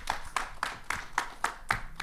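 A small audience applauding: separate, distinct hand claps, several a second.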